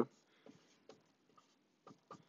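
Dry-erase marker writing on a whiteboard: faint scratchy strokes with a few light taps.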